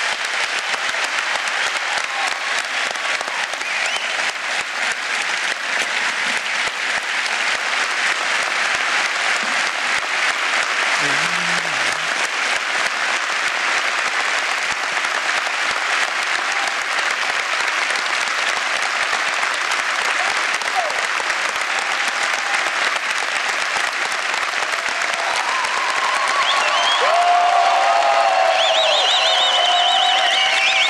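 Large studio audience applauding in a long, steady ovation. It grows a little louder near the end, with voices calling out over the clapping.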